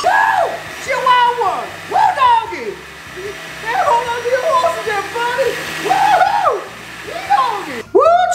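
Countertop blender running on a liquid green chile sauce, stopping just before the end, under a man's loud wordless vocalizing in long sliding pitches that rise and fall.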